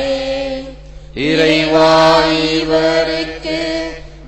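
Slow Tamil devotional hymn sung in a chant-like style over a steady low drone. One held phrase fades just before a second in, and after a short gap a new long, sustained phrase is sung until near the end.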